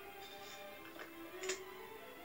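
Faint soft background music from an animated film's soundtrack, heard through a TV speaker, with a brief light tick about one and a half seconds in.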